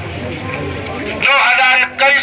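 A man's voice amplified through a handheld megaphone, harsh and wavering. A loud phrase comes a little past the middle, after a lower stretch of background crowd noise.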